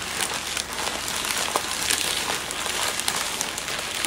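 Paper bag crinkling and rustling as it is handled, with many small crackles throughout.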